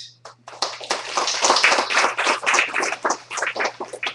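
Small audience applauding: a short round of clapping that starts about half a second in, is fullest through the middle and thins out near the end.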